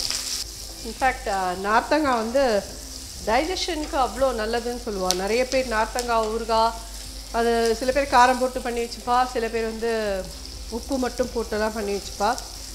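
Steady sizzle of food frying in oil in a kadai on a gas stove as a spoon stirs it, under a woman talking in short phrases that are the loudest sound.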